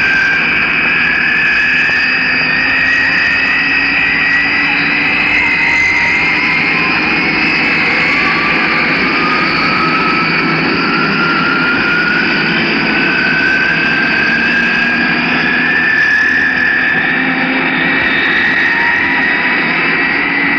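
Twin-engine jet airliner coming in to land: its engines make a steady rushing noise with a whine that climbs slowly in pitch throughout.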